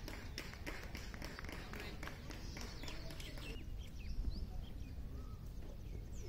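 Faint open-air background: a steady low rumble, a few soft clicks and faint distant voices.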